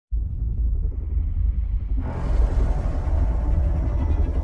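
Deep rumbling drone of a cinematic logo intro, which opens out into a fuller, brighter swell about two seconds in.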